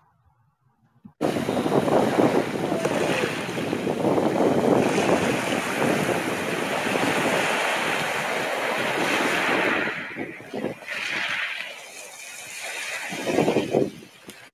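Sea waves washing in over a pebble beach, starting about a second in. It eases off after about ten seconds and swells again with the next wave near the end, then cuts off.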